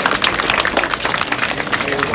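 A crowd clapping: many quick, irregular claps overlapping.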